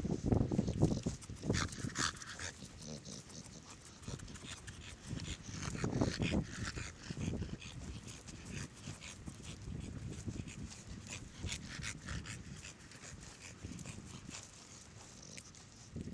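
A short-muzzled American Bully breathing hard and snuffling close to the ground as it sniffs the grass, in uneven gusts that are loudest at the start and again about six seconds in. Light clinks from its chain leash come through now and then.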